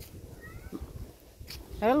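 Faint street background, then near the end a woman's long, wavering sing-song "hello" called out to a cat.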